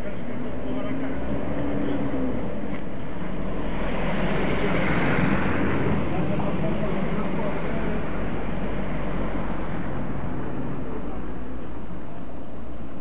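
A van drives past on a snowy street: the engine and tyre noise swells about midway and then fades back into steady street noise.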